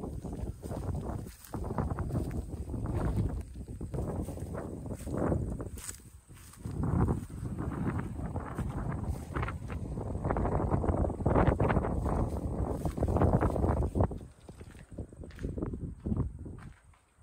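Wind gusting on the microphone in uneven swells, with footsteps through dry grass and then over a rubble-strewn floor.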